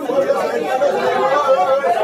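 Crowd chatter: many passengers in a packed metro train car talking at once, their voices overlapping into a steady babble.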